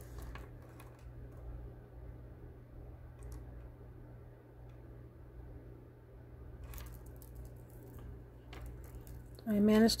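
Faint handling sounds of wire rings being moved on the hands and table: a few light clicks and rustles over a steady low hum. A woman starts speaking near the end.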